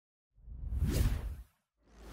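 Whoosh sound effects for an animated logo intro: one whoosh swells and fades in the first half, and another begins near the end, with dead silence between them.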